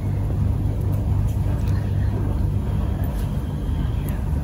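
A steady low background rumble, with a few faint light clicks of small plastic toy ice cream cones handled between the fingers.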